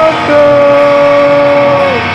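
Live rock band music: a long, steady held note rings through most of the moment and drops away near the end.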